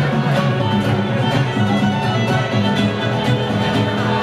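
A live folk-rock band playing an instrumental passage of a lively sea-shanty tune: acoustic guitar strumming, with a bodhrán and a drum kit keeping a steady beat of about two strokes a second under a lead melody line.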